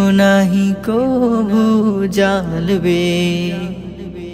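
Male voice singing a long, wavering melodic line over a steady low drone in a Bengali Islamic devotional song (gojol), with no percussion.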